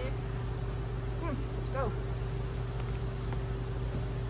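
Steady low room hum, with a person's voice making two short gliding vocal sounds, one falling and one rising then falling, near the middle.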